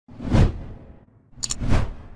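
Two whoosh sound effects, each swelling and fading, the first about half a second in and the second near the end, with a brief high sparkle just before the second: an animated logo-reveal intro sting.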